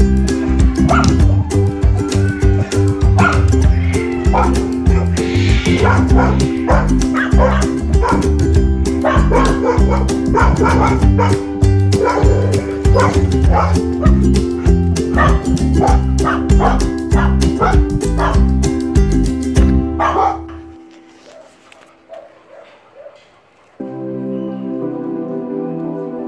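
Dogs barking again and again, many short barks, over background music with a steady beat. About twenty seconds in the music cuts out, leaving only a few faint sounds.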